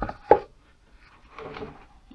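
Two sharp knocks of wood on wood within the first half-second, the second the louder: the loose wooden panel of a small speaker cabinet being handled and pressed against the box.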